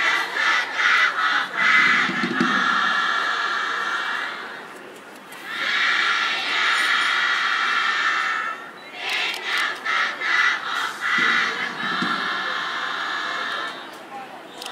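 Many young voices chanting a cheer together: runs of short shouted syllables alternate with long held shouts, with a brief lull about five seconds in.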